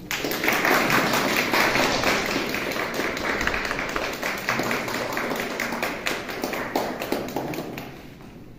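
A small group clapping, starting suddenly and thinning out near the end.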